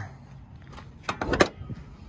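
Hood latch of a 2005 Chevrolet Silverado pickup being released and the hood lifted: a quick cluster of sharp metallic clicks about a second in.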